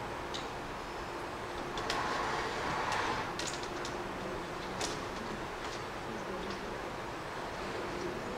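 Steady background hum and hiss with a few light clicks, swelling louder for about a second between two and three seconds in.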